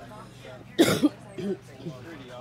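A person coughing close to the microphone, one sharp double cough a little under a second in, followed by a brief, quieter throat-clearing sound.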